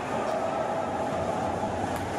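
Steady ice hockey rink noise during play: a constant rumbling hall din, with a short sharp click just before the end.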